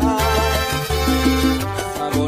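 Salsa romántica music in an instrumental stretch without vocals: a bass line, a melodic line and steady percussion.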